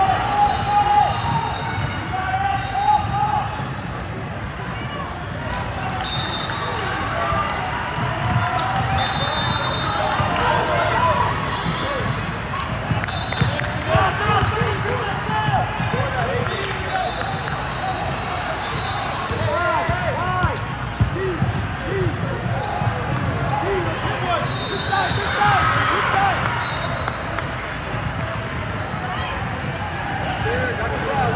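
Basketball game on a hardwood court in a large gym: the ball dribbled and bouncing in many sharp strikes, under players and spectators calling out.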